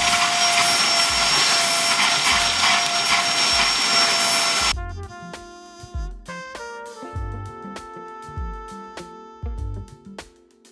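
Kenmore DU2001 bagless upright vacuum running at full suction through its upholstery tool, a steady motor noise with a high whine. It cuts off suddenly just under five seconds in, giving way to background music with a steady beat and piano-like notes.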